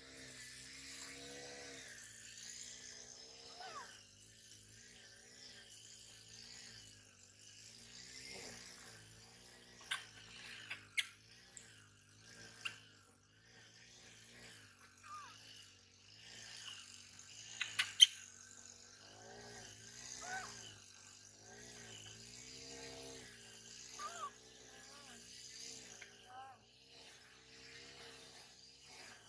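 Water splashing and trickling in a steel basin as a baby macaque is washed by hand, with faint short cries and squeaks from the monkey. A few sharp clicks, the loudest about eighteen seconds in.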